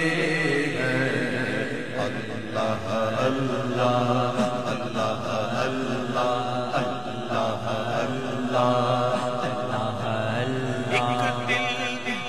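A man reciting an Urdu naat, a sung devotional chant into a microphone, with long held notes that bend and waver, phrase after phrase with short breaths between.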